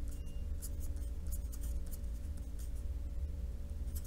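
Pen writing on paper in a run of short scratchy strokes, over a steady low hum.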